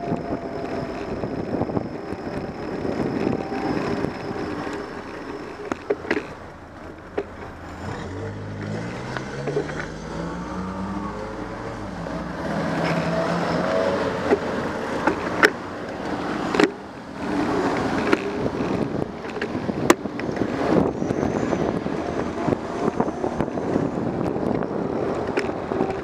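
Riding noise on a bicycle-mounted camera: a steady rush of wind and road noise with frequent knocks and clicks. About eight seconds in, a car engine close ahead speeds up, its pitch rising for a few seconds.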